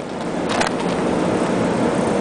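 Steady, loud rushing noise with no clear source, continuous through the pause in speech.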